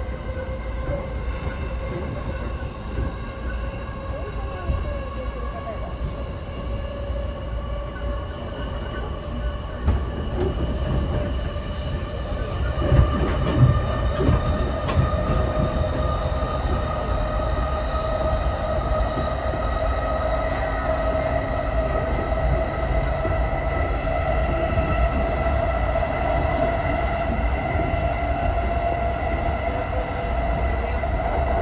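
209 series 500-subseries electric commuter train heard from inside the car while running: a steady rumble of wheels on rail under the whine of the traction motors. The whine rises slowly in pitch from a little before halfway, as the train picks up speed, and a few heavier knocks come near the middle.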